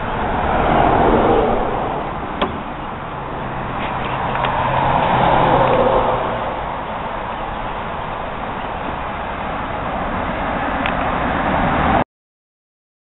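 Road traffic going by, a steady rushing noise that swells and fades twice, with a couple of faint clicks.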